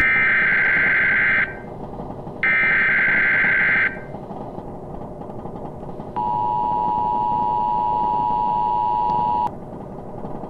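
Emergency Alert System broadcast: two bursts of warbling data tones, each about a second and a half, then the steady two-tone attention signal for about three seconds, over a steady hiss.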